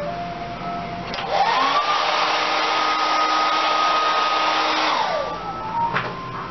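Handheld hair dryer switched on about a second in, its motor whine rising as it spins up, running steadily with a rush of air for about four seconds, then switched off and winding down. It is blow-drying the white bonding glue on a freshly laid quick-weave track.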